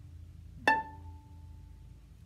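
A single pizzicato pluck on a violin's E string, about two-thirds of a second in: high A, stopped with the third finger, the top note of a plucked A major scale. It rings out for about a second.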